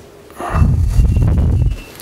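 A breath or sigh blown onto a close microphone: a loud, low, rumbling puff lasting just over a second.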